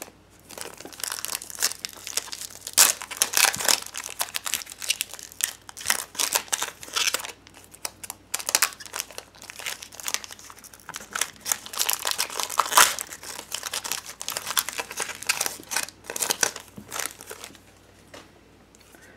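Foil wrapper of a 2014 Bowman Platinum baseball card pack being torn open and crinkled by hand: a long run of irregular crackles and rustles.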